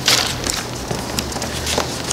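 Bible pages being turned and rustled, a louder swish at the start followed by small scattered paper crackles.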